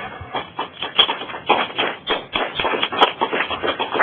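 A small audience clapping. The claps are quick and irregular and die away near the end.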